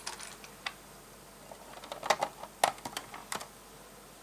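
Loose plastic LEGO pieces clicking and clattering against each other as a hand rummages through a pile of bricks. There are a few scattered clicks at first and a quicker cluster of them from about two seconds in.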